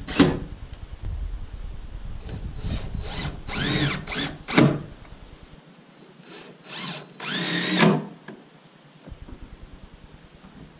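DeWalt 20V cordless drill driving screws into door hardware in several short bursts, each rising and falling in pitch as the trigger is squeezed and let go.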